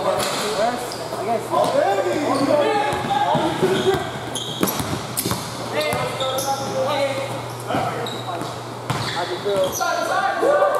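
A basketball bouncing on an indoor court during play, with players' voices calling out across the gym. A steady low hum runs underneath most of it.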